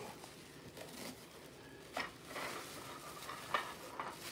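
Plastic bubble wrap rustling and crinkling as it is handled and pulled out of a cardboard box, with a couple of sharper crackles, one about halfway through and one near the end.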